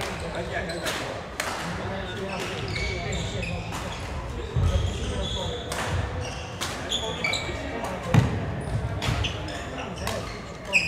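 Badminton rally on a wooden hall floor: sharp racket-on-shuttlecock hits about once a second, short high squeaks of court shoes, and heavy footfall thuds, the loudest about eight seconds in. Under it all is a murmur of voices.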